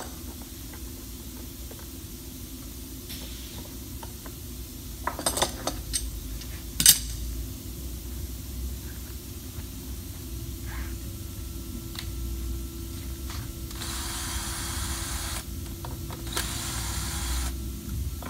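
Clamps being loosened and set down with scattered clicks and clanks, the loudest a sharp clack about seven seconds in, over a low steady hum. Near the end, two short whirring bursts of a cordless drill backing drywall screws out of the plywood straightedge.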